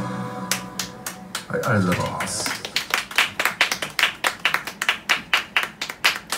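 Small audience clapping at an even pace, a few claps a second, after an acoustic guitar song ends. The last strummed chord dies away at the start, and a brief voice is heard about a second and a half in.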